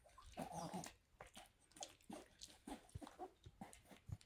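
Small dog chewing and licking up treat crumbs from a fabric couch cushion: faint, irregular smacks and clicks, with one brief louder sound about half a second in.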